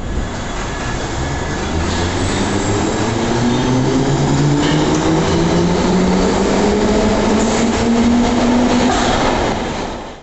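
London Underground Bakerloo line train (1972 Stock) running through the tube tunnel. Its motor whine rises steadily in pitch as it picks up speed, over a loud rumble and rattle of wheels on rail.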